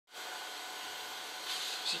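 A small electric motor running with a steady, even whooshing hiss. A man starts to speak right at the end.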